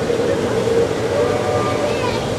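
Expedition Everest roller coaster train running along its steel track, a steady running noise with a faint whine near the end.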